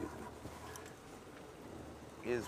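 Faint outdoor ambience with a steady low hum underneath and no distinct event.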